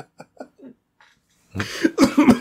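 A man laughs in a short run of quick chuckles that fade out, then coughs loudly near the end.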